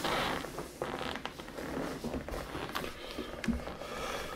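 Clothing rustling and a few small clicks and knocks from a person handling equipment and shifting in a chair close to the microphone.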